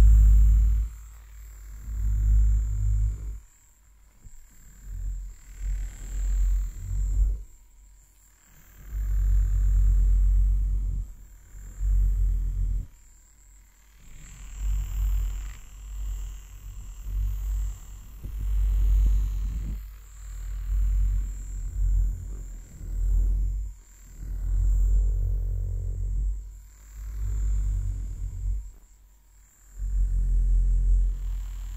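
Vibrating silicone-bristle facial cleansing brush pressed against a fluffy microphone cover, a low buzzing rumble that swells each time it touches down and drops away between strokes, every second or two.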